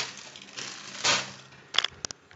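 Plastic bag of cereal being handled: a short crinkling rustle about a second in, then a few sharp clicks near the end.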